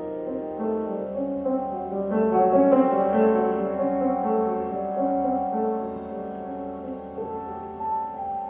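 Recorded solo piano playing a slow melody of sustained, overlapping notes, heard over the room's speakers. It swells somewhat louder a couple of seconds in.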